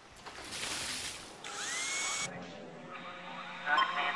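Cartoon sound effects: a drill-like mechanical whirring for about two seconds, with a short rising whine in it, then a busier clattering patch that grows loudest near the end.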